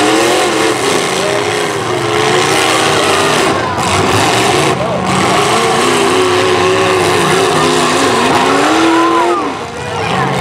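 Several demolition derby cars' engines revving up and down over and over as the cars drive and ram one another, loud and overlapping, over a steady rush of noise.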